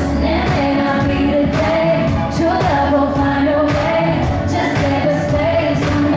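Live pop/R&B song played through a concert PA: a female lead vocal over a drum beat, recorded from the audience.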